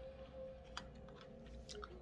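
A person chewing a mouthful of soft cooked squash and potatoes: faint chewing with a couple of small mouth clicks, over a faint steady hum.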